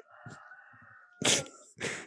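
A baby making two short, breathy vocal bursts a little over halfway through, about half a second apart.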